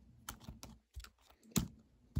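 A handful of light, irregular clicks and taps from a plastic model horse being handled by hand beside a toy plastic fence, the loudest about one and a half seconds in.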